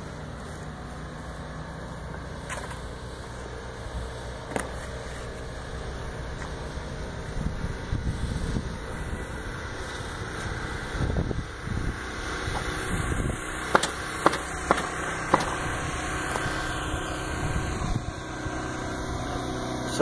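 A motor running steadily with a low hum, with scattered sharp knocks from roofers working on the roof, several of them close together about two-thirds of the way through.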